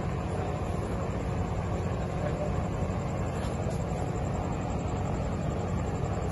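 Outdoor crowd ambience at a cricket ground: a steady low rumble under indistinct voices of spectators.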